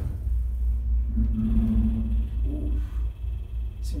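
Dover Oildraulic hydraulic elevator starting up and rising, its pump motor running with a loud low rumble and a steady hum for about a second near the middle. The motor sounds rough: it does not run all that great.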